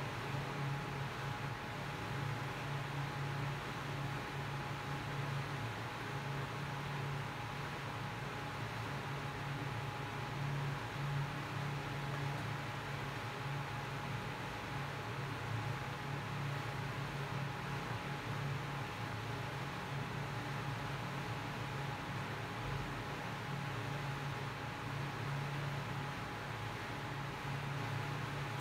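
Steady background noise: an even hiss with a low hum and a faint steady high tone, with no distinct events.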